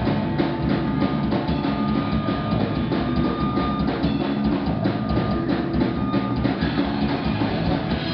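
Live rock band playing loud, the drum kit to the fore with a fast, steady beat of kick and snare under guitars and bass. A held guitar note rings out twice through the middle.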